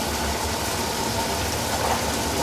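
Commercial gas wok burner running steadily on high flame, with sauce bubbling and sizzling in the wok: a low rumble under an even hiss.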